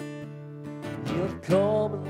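Amplified acoustic guitar played live: chords strummed and left ringing, with a louder attack about one and a half seconds in.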